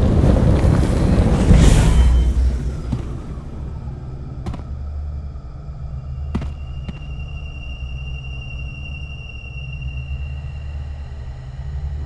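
Rocket-engine rumble of a lunar lander touching down: loud and noisy for the first two seconds, then settling into a steady low rumble. A few sharp clicks come around the middle, and a thin steady high tone holds for about four seconds in the second half.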